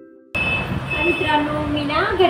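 The faint tail of a short musical chime, then an abrupt cut to a woman speaking over steady background noise.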